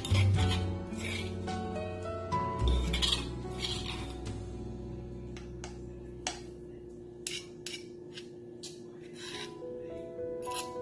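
Metal spoon scraping crushed garlic out of a stone mortar and off its pestle. Rasping strokes in the first few seconds give way to short clicks of the spoon against the stone. Background music plays underneath.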